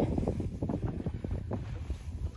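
Wind rumbling on the microphone, uneven and gusty, with many faint small ticks through it.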